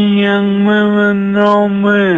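A male caller's voice over a telephone line, holding one long, steady note with a couple of slight breaks in it.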